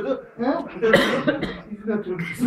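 Men's voices in a room, with a cough about a second in.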